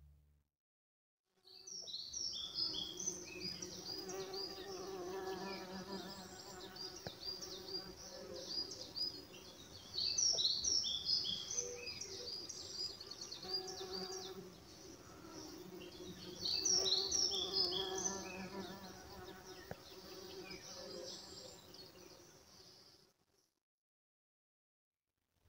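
Insects buzzing, a steady drone that wavers in pitch, with small birds twittering high above it, the twittering thickest about ten and seventeen seconds in. It fades in after about a second and a half of silence and fades out just before the end.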